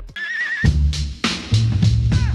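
Outro music: after the rap cuts off, a beat with a short wavering high note near the start, drum hits and a low held bass note.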